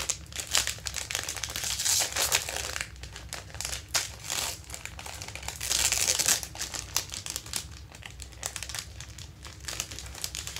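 Plastic wrapper of an ice cream sandwich crinkling as it is handled and opened, louder in two spells, around two seconds in and around six seconds in.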